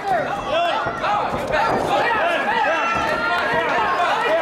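Crowd at an amateur boxing match shouting encouragement, many voices yelling over one another in short, rising-and-falling calls.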